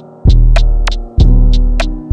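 Hip-hop instrumental at 93 BPM: deep 808 bass notes that strike about once a second and fade away, under sustained synth tones, with short crisp percussion ticks on the beat.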